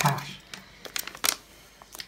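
Metallic foil pouch crinkling in the hands as it is pulled open: a few separate sharp crackles between about half a second and a second and a half in.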